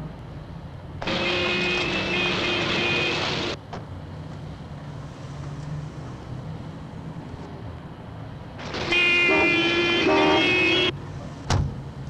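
Street traffic rumbling low throughout, cut by two long, loud vehicle horn blasts, each lasting about two and a half seconds; a single sharp knock comes near the end.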